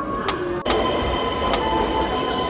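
Keisei electric trains at a station platform: running noise with clicks and a falling whine, then an abrupt cut about two-thirds of a second in to a steady hum with a high, even whine.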